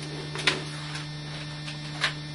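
Steady low electrical hum, with a brief faint noise about half a second in.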